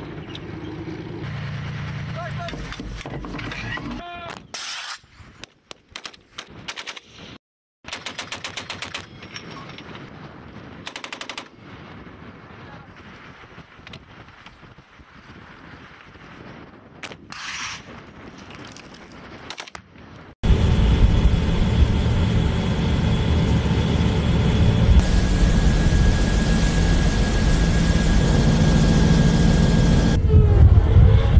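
Short bursts of machine-gun fire and single shots, cut between clips. From about two-thirds through comes a loud, steady rumble.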